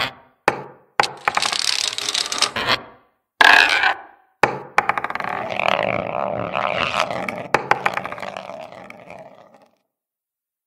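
Animation sound effects of balls knocking and rolling: several sharp knocks and short scraping rolls, then a longer rolling rattle with a few clicks in it that fades away near the end.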